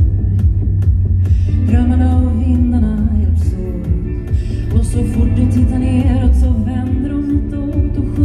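Live band music: a woman singing lead over electric guitar, a deep bass line and a steady ticking beat. Her voice comes in about two seconds in.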